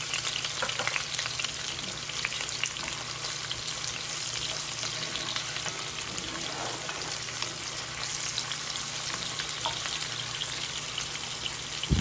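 Sliced green onions sizzling in hot olive oil in a cast-iron pan: a steady sizzle full of fine crackles, with a wooden spoon stirring them through the oil.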